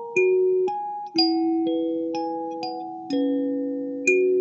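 Lingting K17P kalimba playing a Christmas carol: plucked metal tines, each note ringing on and fading slowly under the next, about two plucks a second, often with a lower note sounding alongside.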